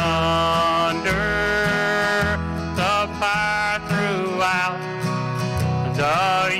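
Country-style Southern gospel song with guitar and bass under long held notes.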